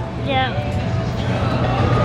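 Steady low rumble of street traffic, with a brief fragment of a woman's voice about half a second in.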